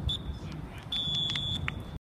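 Referee's whistle: a short blip, then a longer steady blast of about two-thirds of a second near the end, over wind rumble on the microphone.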